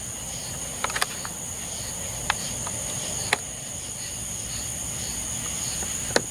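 Night insects calling: a steady high-pitched trill with a softer pulsing call beneath it, and a few scattered sharp ticks.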